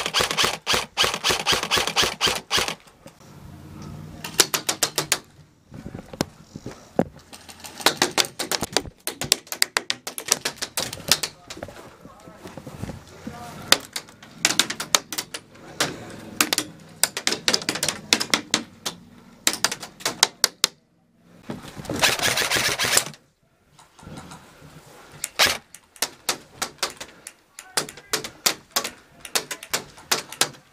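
Airsoft electric guns firing full-auto bursts, a fast clicking rattle. It comes in repeated volleys, the longest about three seconds at the start and another about two-thirds of the way through.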